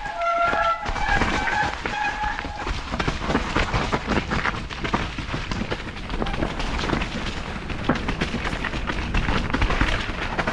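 Mountain bike descending a wet, leaf-covered dirt trail: a constant clatter of tyres, chain and frame over roots and ruts, with a heavy rumble of wind on the camera microphone. A few short squeals sound in the first couple of seconds.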